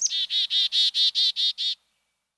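A chickadee's 'chick-a-dee' call: one high opening note followed by about eight quick repeated 'dee' notes, stopping just before the end.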